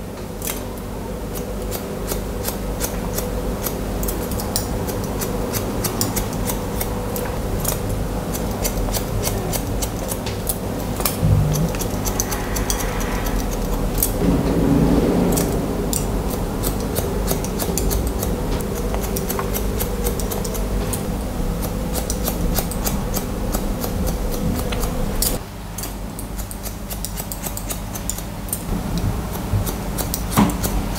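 Barber's scissors snipping into hair in quick, irregular point-cutting snips, with a steady low hum underneath that drops in level about 25 seconds in.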